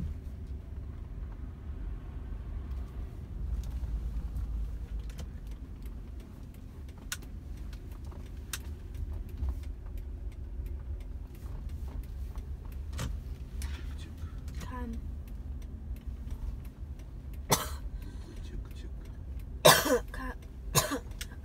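Inside a slowly moving car's cabin: a steady low rumble of engine and road noise with scattered faint clicks. Near the end a person clears their throat loudly.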